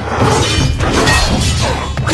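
Movie fight-scene soundtrack: several sharp crashes and breaking sounds of a close fight, mixed over film music.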